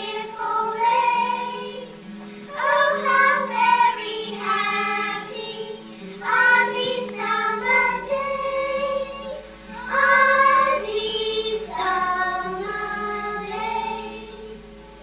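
A group of young children singing a song together in phrases of a few seconds, with short breaks between them and a steady low hum underneath.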